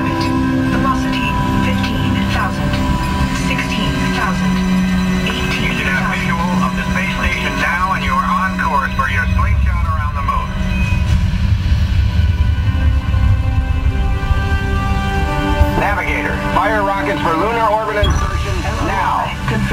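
Simulator-ride soundtrack: background music over a steady low rumble of spacecraft engine effects, with voices that cannot be made out around the middle and again near the end.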